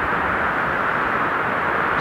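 Steady rush of the Virgin River's rapids running over boulders, an even, unbroken wash of water noise.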